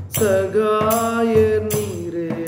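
A man singing a long, wavering note of a Tamil devotional song, accompanied by a hand-struck tambourine beating steadily about three times a second.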